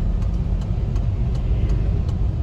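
Steady low rumble of a car's engine and tyres heard from inside the cabin while driving on a wet road.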